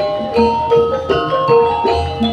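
Javanese gamelan playing: bronze metallophones struck in a quick running melody, each note ringing on as the next is struck, several notes a second, over a low steady hum.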